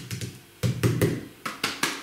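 Hands handling a small cardboard firework battery, making a quick series of light taps and knocks against the box.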